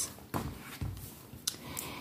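Handling noise from a manicure case and metal nail tools: a few light clicks and a dull thump as the case is moved aside and the nail clippers are picked up.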